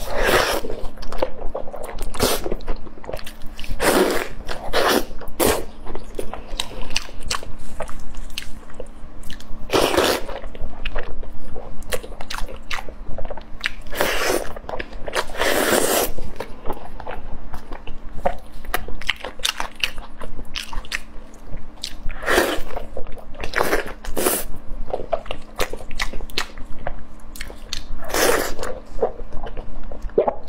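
Close-miked biting and chewing of braised pig's trotters: irregular wet mouth sounds, with a louder bite every few seconds.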